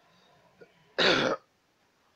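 A man's single short throat-clearing cough, about a second in.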